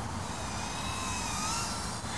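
The whine of a small FPV quadcopter's brushless motors and props, thin and high, wavering slightly in pitch over a steady hiss.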